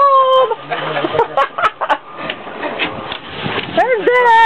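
People's voices: a drawn-out call at the start, then scattered short vocal sounds and knocks over a rushing background noise, and a voice rising again near the end.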